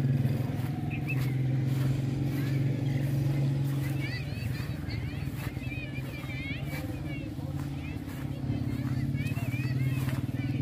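A steady low drone of an engine running unseen, with birds chirping from about four seconds in.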